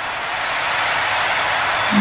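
A steady rushing noise, growing slowly louder.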